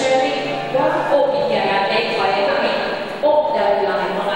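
A person talking through a microphone and loudspeakers in a large hall, with music still playing softly underneath.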